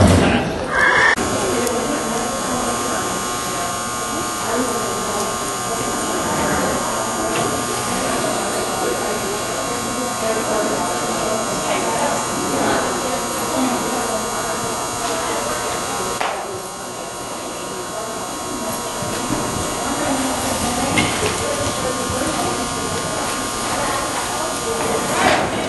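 Indistinct voices in a large, echoing indoor hall, with a steady electrical buzz that starts about a second in.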